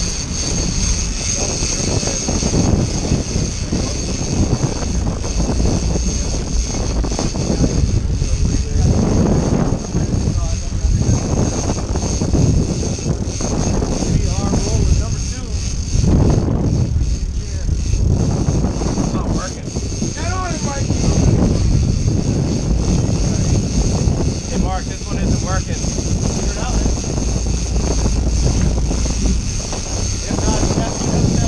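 Sportfishing boat's engines running with wind rumbling on the microphone, and indistinct calls from the crew in the cockpit, a few of them past the middle.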